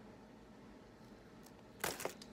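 Quiet room tone, then near the end a brief rustle of handling as a paper insert is put down in the cardboard box.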